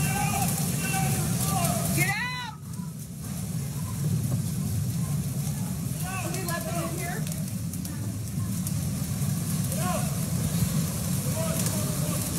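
Steady rushing noise of torrential rain and floodwater, picked up by a phone, with a few excited shouts from bystanders over it.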